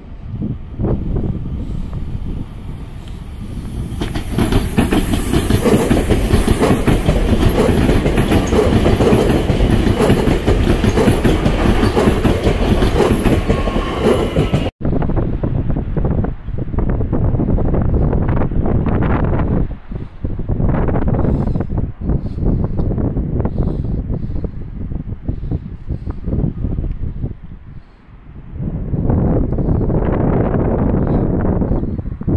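A train running past on the station tracks: a steady rail rumble and wheel noise that swells about four seconds in and lasts about ten seconds before cutting off abruptly. After that comes a rougher, gusting noise with sudden drops.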